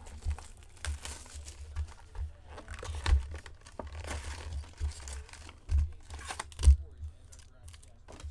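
Cardboard hobby box of trading cards being opened by hand: the lid flap pulled back and the wrapped card packs inside rustling and crinkling as they are lifted out, with a few sharp knocks, the loudest one late on.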